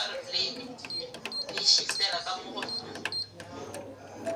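Quiet, indistinct talking, with a few faint, short, high-pitched beeps.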